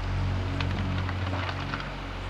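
Hydraulic excavator's diesel engine running with a steady low hum, with scattered crackling as its bucket rips through shrubs and branches.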